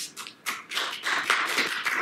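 Audience applauding: a few scattered claps that fill out into steady applause about half a second in.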